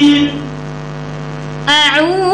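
Steady electrical mains hum through the sound system in a pause of Qur'anic recitation: a held recited note fades out just after the start, and the reciter's chanting voice comes back in with a sliding, ornamented phrase about a second and a half later.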